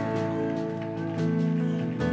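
Live worship band music: sustained chords held under the sermon, moving to a new chord a little over a second in.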